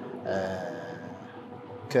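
A man's voice making a short drawn-out hesitation sound, like 'aah', in a pause in his Arabic speech; he starts speaking again near the end.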